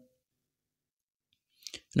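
Near silence in a pause of a man's voice-over, with one short faint click shortly before he speaks again.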